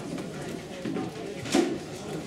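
Low, indistinct voices in a room, with one sudden sharp thump about one and a half seconds in.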